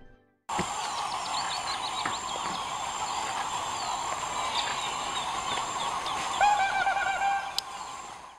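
Wetland ambience at dusk: a dense, steady chorus of birds and other animal calls, starting after a brief gap, with a louder drawn-out pitched call standing out about six and a half seconds in.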